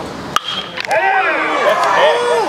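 A single sharp crack of a bat hitting a pitched baseball, then spectators shouting and cheering as the ball is put in play.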